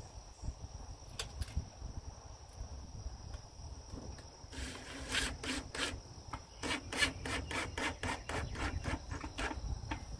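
Cordless drill driving a screw through perforated galvanized metal strapping into a wooden block, in a short run and then a longer run of rhythmic rasping, about four strokes a second, over a steady motor hum. Crickets or other insects keep up a steady high buzz throughout.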